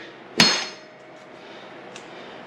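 A single sharp metallic clank with a brief ring about half a second in, like a short length of inch-and-a-half steel tubing being set down on a diamond-plate steel workbench.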